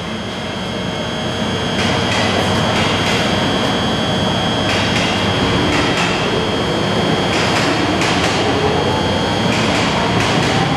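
EF64 electric locomotive standing at the platform with its equipment running: a loud, steady hum and hiss with a constant high-pitched tone, dotted with short, sharp clicks.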